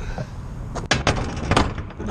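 A semi-trailer's rear swing door being shut and latched: a quick run of about five sharp knocks, about a second in.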